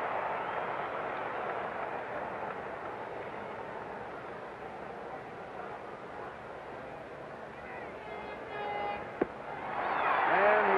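Ballpark crowd noise, a steady roar that slowly fades, with a brief high call rising out of it near the end and one sharp crack about nine seconds in, as a pitch smacks into the catcher's mitt.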